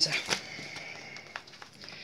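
A pet's high, thin whine, held for about a second, with a few faint light clicks.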